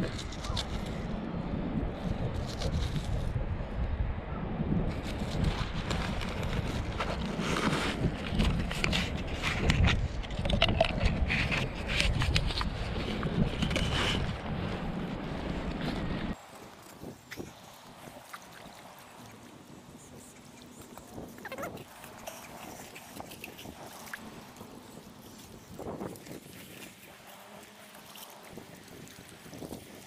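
Wind buffeting the microphone with crackling handling noise for the first half. After an abrupt cut it gives way to a much quieter stretch of faint wind and shallow water with occasional small knocks.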